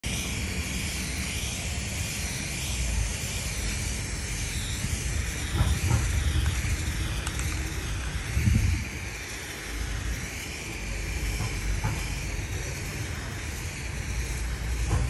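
Aerosol spray paint can hissing steadily as paint is sprayed onto a wall, with a few brief low rumbles in the middle.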